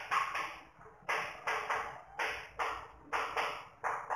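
Chalk writing on a blackboard: short scratchy strokes and taps, several in quick succession, coming in clusters about once a second.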